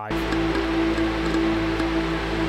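Arturia Pigments 5 softsynth sounding a held note, with sidechained audio from the DAW coming in through its Audio Input: one steady pitched tone over a dense hissing wash.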